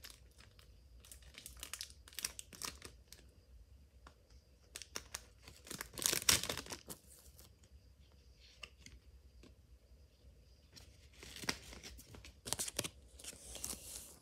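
A trading-card booster pack's wrapper being torn open and crinkled, in irregular short rustles, loudest about six seconds in and again toward the end.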